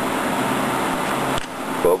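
Steady rushing hiss of a glassworking torch flame, with a short click about one and a half seconds in.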